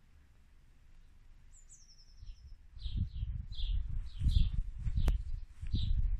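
Small birds chirping outdoors: a quick falling run of high notes about a second and a half in, then short chirps repeated over and over. From about three seconds in, wind rumbles on the microphone in gusts, and there is a single sharp click near the five-second mark.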